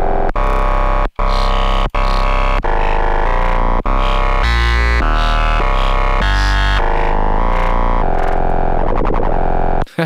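Ableton Operator synth notes distorted through Saturator's waveshaper, with an envelope sweeping the waveshaper period. A run of short, buzzy notes over a deep bass plays, and the overtones shift as the envelope's maximum is dialed, turning to a smeared, wavering texture near the end.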